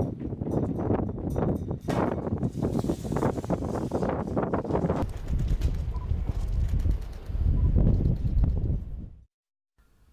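Wet concrete tipped from a small drum mixer and sliding down a metal chute into the foundation: a rough, clattering scrape that turns into a heavier low rumble in the last few seconds, then cuts off suddenly.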